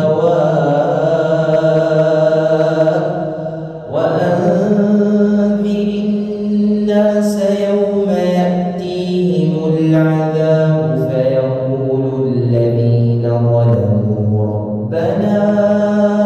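A man reciting the Quran in a slow, melodic tajweed style, holding long drawn-out notes that step down in pitch, with a short pause for breath about four seconds in.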